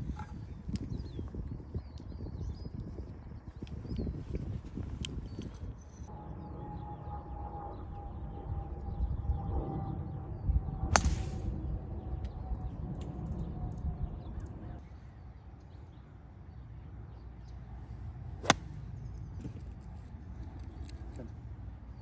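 Two sharp golf club strikes on the ball over a low rumble of wind on the microphone: one about eleven seconds in, and a crisper, louder one about eighteen seconds in. A faint steady whine, slowly falling in pitch, runs through the middle stretch.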